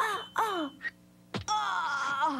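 A woman's voice crying out: two short falling yells in quick succession, then a longer wailing cry that starts about a second and a half in and falls in pitch.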